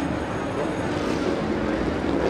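Motorcycle engines running steadily as bikes roll slowly at walking pace through a crowd, with crowd chatter underneath.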